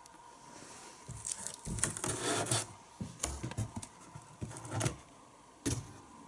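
Intermittent rubbing and scraping handling noises, with one sharp click about three seconds in.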